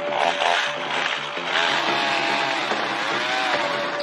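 Gasoline chainsaw running and cutting into the trunk of a standing dead spruce, its engine pitch rising and falling under load.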